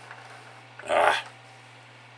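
A single short, loud vocal sound about a second in, over a steady low hum.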